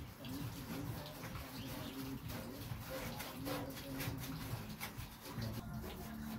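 Cooing bird calls repeating throughout, with scattered faint clicks.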